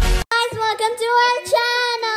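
Electronic intro music cuts off abruptly at the very start, then a child sings in a high voice, holding drawn-out notes that slide up and down in pitch.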